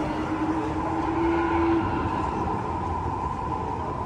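Wind on a high open terrace, whistling through a wire-mesh safety fence: two steady whistling tones, the lower one rising slightly and stopping about two seconds in, over a low rumble of wind on the microphone.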